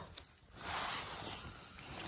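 Soft rustling as a person moves and reaches down into moss on the forest floor, with a faint click just after the start and about a second of rustle that fades away.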